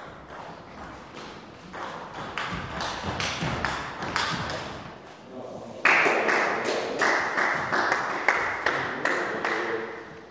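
Table tennis rally, the celluloid ball clicking back and forth off the bats and the table. About six seconds in, a sudden, louder burst of spectators clapping and shouting follows as the point ends.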